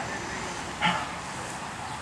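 Outdoor background noise with one short, high, voice-like call just under a second in.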